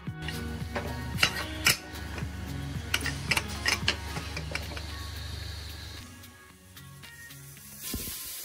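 A series of light metallic clicks over the first four seconds or so, as the pressure weight is fitted onto the vent pipe of an aluminium Prestige Deluxe pressure cooker lid. Background music plays underneath.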